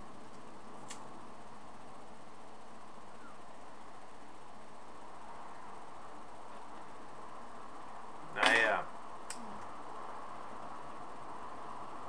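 Steady background hiss, broken about eight and a half seconds in by a man's short, loud vocal sound, with a couple of faint clicks.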